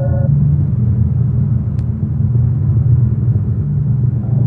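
A low, steady rumbling drone from an ambient soundtrack. A sustained gong-like chord above it cuts off just after the start, leaving the drone alone, with one faint click near the middle.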